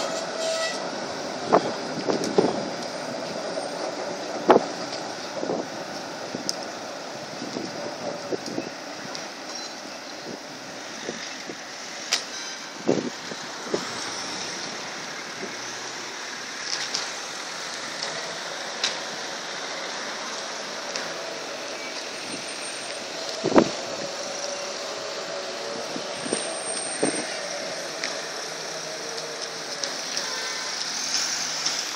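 Vintage Munich P-series tram, motor car and trailer, rolling slowly through a turning loop: the steel wheels give a string of sharp knocks over rail joints and points, the loudest about four seconds in and again near 24 s.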